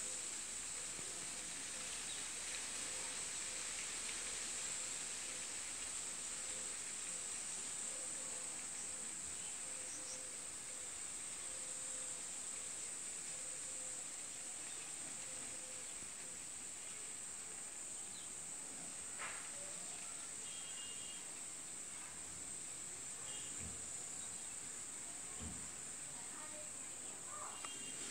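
Quiet steady background noise with a constant high-pitched hiss throughout, and a few faint soft knocks near the end.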